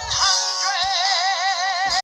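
Synthesized singing voice holding a long note with a wavering pitch over music, played through a device speaker; it cuts off suddenly at the end.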